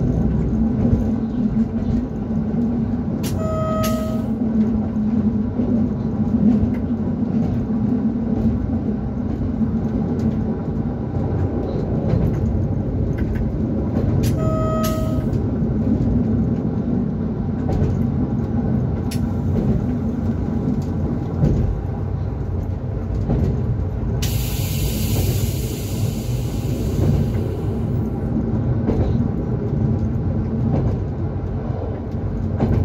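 ZSSK class 425.95 Tatra electric unit running along the line, heard from inside the driver's cab: steady rail rumble under a constant electric hum. Two short electronic beeps sound about eleven seconds apart, and a hiss lasting about four seconds comes near the end.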